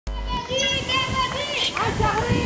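The opening of a channel intro sound: high, childlike voices with rising and falling pitch, coming in abruptly after a short low hit at the very start.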